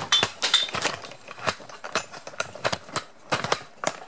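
Irregular clicks, taps and knocks of a hand gripping and adjusting a camera close to its built-in microphone.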